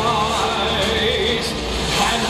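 Music from a stage musical's song: singing voices over instrumental accompaniment, at a steady level.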